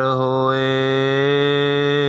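A man's voice chanting Gurbani in the melodic recitation style of the Hukamnama, holding one long note at a steady pitch.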